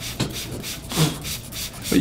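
Synthetic jacket shell fabric rustling as it is handled and rubbed: a run of quick swishing strokes.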